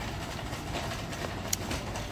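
Wire shopping cart rolling across a smooth store floor: a steady rumble of the wheels and rattle of the basket, with one short click about a second and a half in.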